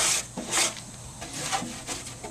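Scraper scraped along the inside walls of a grill to loosen baked-on grease. There are two short scraping strokes in the first second, then fainter scraping.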